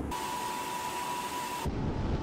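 Steady cabin noise of a military transport aircraft in flight, with a thin high whine held over it. Near the end it cuts to a rushing, lower rumble of wind and engines as seen from the open door.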